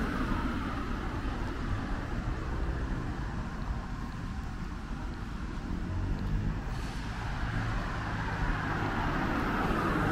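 Street traffic: cars driving past on the road alongside, a steady rumble of engines and tyres that swells as a car passes near the start and again near the end.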